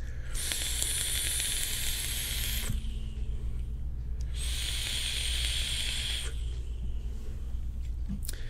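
Vaping on an e-cigarette: two long hissing drags or breaths of air and vapor, each about two seconds, with a short pause between.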